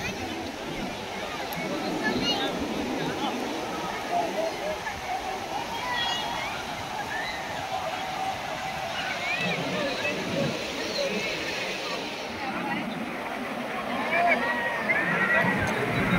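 Ocean surf washing in under a crowd of people talking and calling out, with the voices growing louder and busier near the end.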